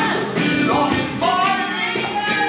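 Live music: a voice singing a wavering, gliding melody over held instrumental notes and a hand drum.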